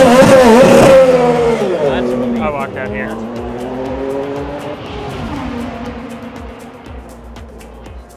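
IndyCar at speed passing close by, loudest in the first second, then its engine note dropping in pitch and fading away over several seconds. A music beat runs faintly underneath toward the end.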